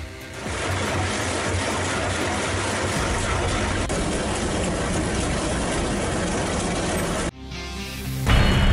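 Excavator-mounted rotary drum cutter milling into concrete and rock: a steady, dense grinding noise, with music underneath. It cuts off abruptly near the end.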